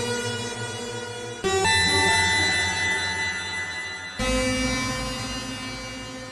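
Dissonant, creepy synthesizer patch from Arturia Pigments: detuned unison saw waves run through delays, a randomised pitch-shifting delay and a lowered shimmer reverb, played as held chords. A new chord strikes about a second and a half in and another just past four seconds, each fading slowly.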